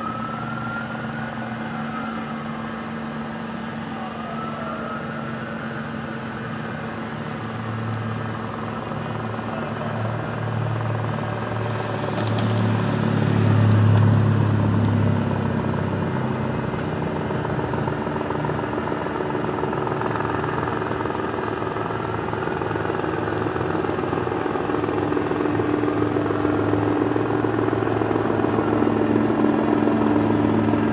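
A vehicle engine running at idle close by, its low hum growing louder about halfway through and then settling. A distant siren wails faintly near the start and again later.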